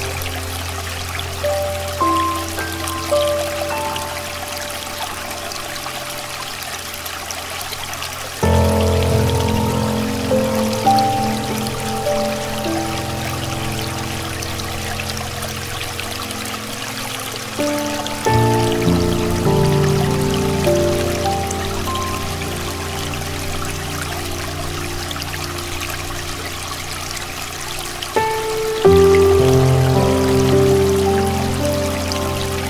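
Slow, calm piano music with long held chords, a new low chord struck about every ten seconds, over a steady hiss of flowing stream water.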